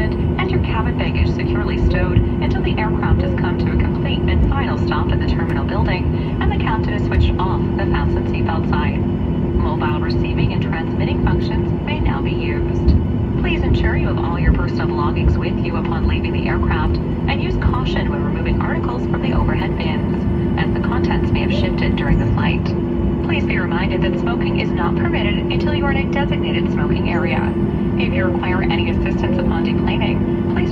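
Cabin noise of a Boeing 737 MAX 8 taxiing after landing: a steady rumble with a constant low hum from its CFM LEAP-1B engines at idle.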